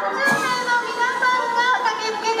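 Fire-department marching band of flutes, clarinets, saxophones and brass playing while marching, holding sustained notes, with crowd voices around it.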